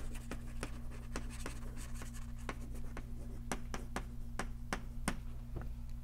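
Chalk writing on a blackboard: a quick, uneven run of sharp taps and short scratches as letters are written, over a steady low hum.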